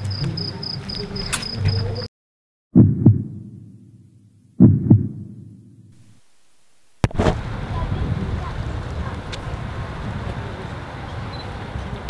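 Two deep booming hits about two seconds apart, each fading out over a second and a half, with dead silence around them. Before them, crickets chirp in a steady pulsing trill; after them, from about seven seconds in, a steady hiss of background noise.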